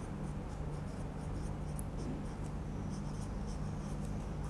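A pen writing on paper: many short, faint scratchy strokes, over a steady low hum.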